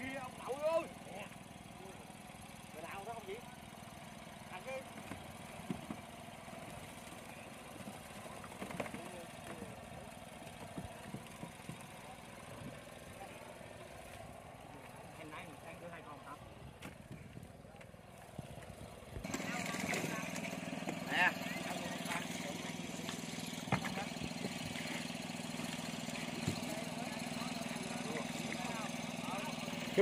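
A steady low engine hum with scattered faint knocks and distant voices. It becomes abruptly louder and fuller about nineteen seconds in.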